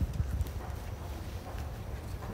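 Wind buffeting the microphone outdoors: an uneven low rumble that flutters and gusts.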